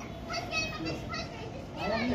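Children's voices calling out at a distance, high-pitched and thin, over a low background hum of open air.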